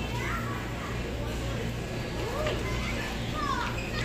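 Shop ambience: scattered, distant children's voices and chatter over a steady low hum.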